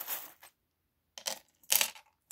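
Small charms clattering as a handful is dropped onto a mirrored tray, in two short bursts a half-second apart, the second the louder. A soft rustle from the fabric pouch they came from comes first.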